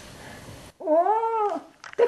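An elderly woman's voice in one long, wordless drawn-out exclamation that rises and then falls in pitch, starting about a second in and lasting under a second. Before it there is a faint hiss that cuts off suddenly.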